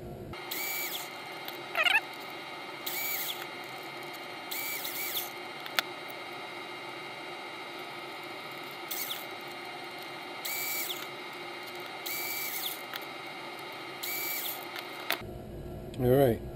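A 1980s cordless drill, rewired to run from an A123 battery pack, is run in about seven short bursts as it reams out bolt holes in a 3D-printed plastic part. Each burst whines up to speed, holds briefly, then winds down.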